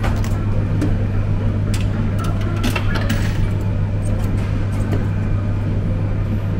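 Steady low hum of claw-machine arcade ambience, with scattered light clicks and clinks.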